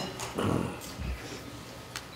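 A short human vocal sound about half a second in, falling in pitch like a whimper: someone choking up with tears. Low room noise follows.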